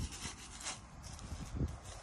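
Paintbrush bristles rubbing and dabbing paint onto a painted post in short, irregular strokes, with a couple of low thumps, the louder one just past the middle.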